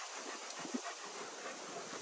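Dog panting, with a light click about a quarter of the way in.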